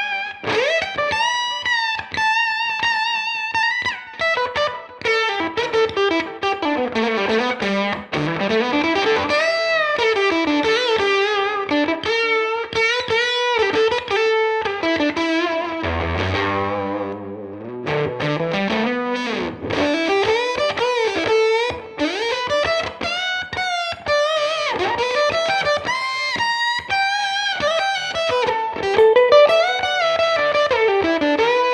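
Reverend Club King RT electric guitar with Revtron pickups, played through a Fender '57 Custom Tweed Deluxe amp and effects pedals. It plays single-note lead lines with bends and wavering vibrato, with a low note sliding slowly upward a little past the middle.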